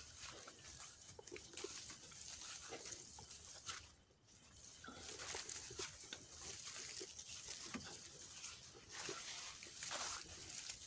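Faint footsteps and leaves brushing as people push along a narrow overgrown farm path, with scattered soft clicks over a steady high hiss.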